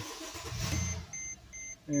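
Mercedes-Benz GL450's V8 engine cranking briefly and starting, settling to idle, followed by a chime of short high beeps repeating about two and a half times a second. The start comes with the key after the loose connector on the electronic ignition switch's circuit board was resoldered, the fix for its intermittent no-start.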